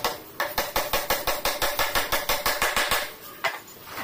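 Hammer driving nails into the top edge of a plywood cabinet panel: a fast, even run of sharp strikes, about six a second, that stops about three seconds in, followed by one more knock.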